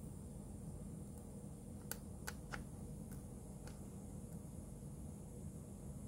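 Quiet room tone with a steady low hum, and a few faint light clicks about two to four seconds in from the multimeter probes being handled against the small circuit board.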